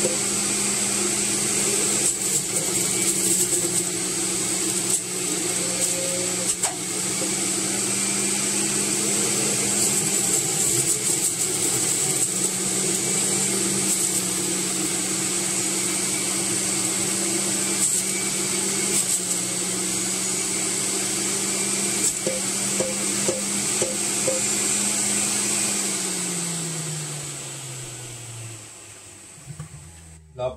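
Electric centrifugal juicer running steadily with a motor hum and a high whine while celery is pressed down its feed chute. About 26 seconds in the motor winds down, its pitch falling and the sound fading.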